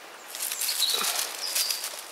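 Dry, blight-withered tomato foliage rustling and crackling as it is brushed through, starting about a third of a second in.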